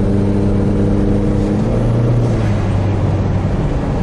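Chrysler PT Cruiser GT's turbocharged four-cylinder engine and road noise heard from inside the cabin while accelerating at highway speed: a steady drone.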